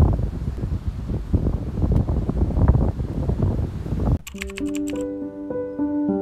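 Wind buffeting the microphone with a loud, uneven rumble, which cuts off suddenly about four seconds in. A few quick clicks follow, then soft music of steady held notes.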